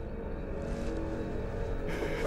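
A low, steady rumble with faint held tones above it, a sustained drone from the film's soundtrack.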